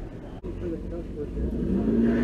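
City street traffic: a car driving past, with the low rumble swelling in the second half. There is a sharp knock just under half a second in, and a long steady tone begins near the end.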